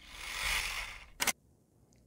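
Video transition whoosh sound effect: a rush of noise that swells and fades over about a second, followed by a short sharp click.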